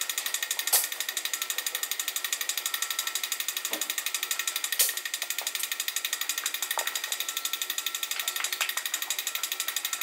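A steady, fast, evenly pulsing mechanical buzz, with two sharp knocks, one about a second in and one about halfway through.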